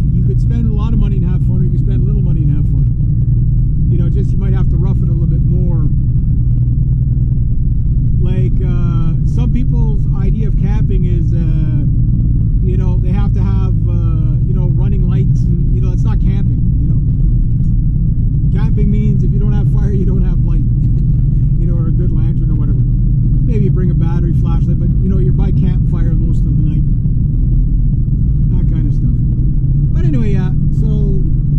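Steady low rumble of a Honda Civic's engine and tyres heard from inside the cabin while driving on the road, with a voice talking on and off over it.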